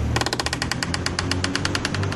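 A rapid, even train of mechanical clicks, about a dozen a second, that stops after about a second and a half, over a steady low rumble.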